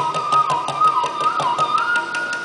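Bamboo flute melody with sliding, dipping ornaments on a held note, rising to a higher held note near the end, over rapid, even tabla strokes.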